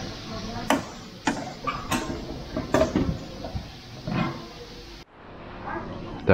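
Serving utensils clinking against a stainless-steel buffet chafing pan and a china plate as stew is ladled out: about five short, sharp clinks over four seconds.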